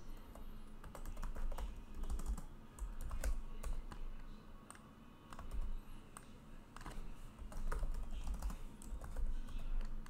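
Computer keyboard keystrokes and mouse clicks, irregular and scattered, as text is selected and pasted in a document.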